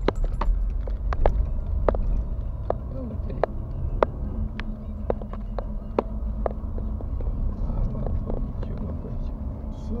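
Car cabin noise while driving: a steady low rumble of engine and tyres, broken by frequent irregular sharp clicks and knocks of rattling.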